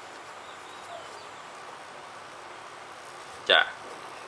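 Marker tip writing on a whiteboard, faint thin squeaks early on over a steady low hiss of room noise. A man says one short word near the end.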